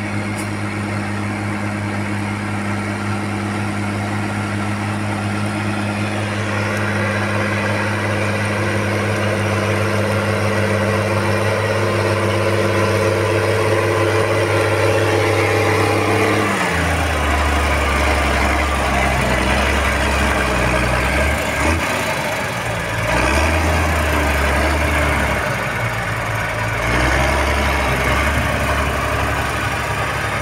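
Farm tractor diesel engine running steadily under load while ploughing. About halfway through, the sound cuts abruptly to a different, deeper tractor engine pulling a plough, its note rising and falling with the load.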